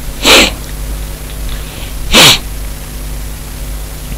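A person sneezing twice, about two seconds apart; each sneeze is short and loud.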